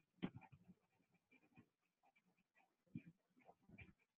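Near silence on a video call, with only faint, scattered, broken-up background sounds.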